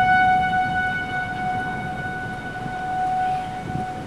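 Outdoor tornado warning siren sounding one long steady tone, its loudness slowly fading and swelling, over a low wind rumble.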